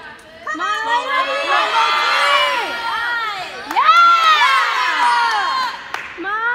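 A group of high-pitched voices cheering and shouting encouragement at once, overlapping calls that swell and stay loud, peaking a little under four seconds in.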